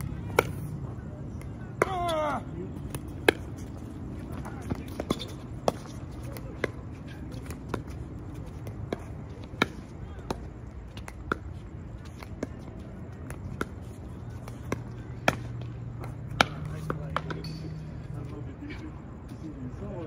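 Pickleball paddles striking a hard plastic ball in a long doubles rally, with the ball bouncing on the court: sharp pops roughly once a second, some loud drives and some soft dinks. A short vocal call cuts in about two seconds in.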